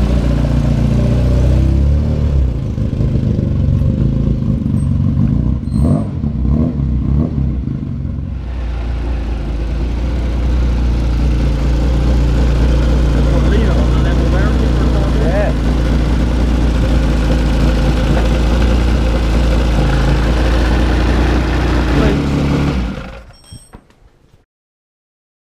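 New race engine of a classic Mini running on its first start-up, idling steadily apart from an uneven stretch early on, then fading out near the end.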